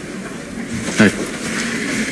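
A person's brief vocal sound about a second in, over a steady low hum and background noise.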